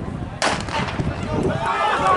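A starter's pistol fires once, sharp and loud, about half a second in, signalling the start of a 110 m hurdles race. Spectators begin shouting near the end.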